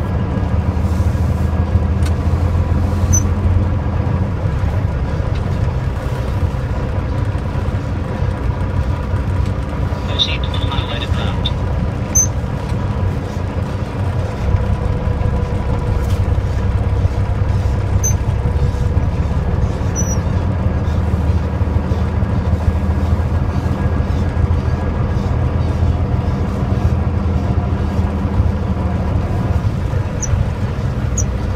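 Steady low drone of a semi-truck's diesel engine running, heard from inside the cab, with a brief high-pitched sound about ten seconds in.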